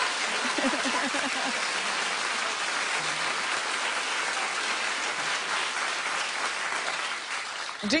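Studio audience applauding steadily, with a few voices mixed in at first. The applause dies away just before the end.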